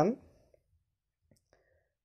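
A man's voice trailing off at the start, then near silence broken by a few faint clicks.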